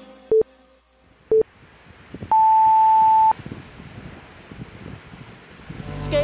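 Workout interval-timer countdown beeps: two short lower beeps a second apart, then one long higher beep about a second long marking the end of the exercise, over a faint hiss.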